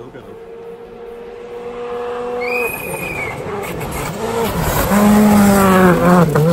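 A rally car's engine coming up a gravel forest stage, getting steadily louder as it nears and loudest as it passes close by near the end. There the engine note dips sharply in pitch a couple of times as the driver lifts and shifts.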